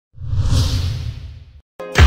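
A whoosh sound effect with a low rumble underneath, swelling up and fading over about a second and a half, then a brief gap before dance music with a thumping bass beat kicks in near the end.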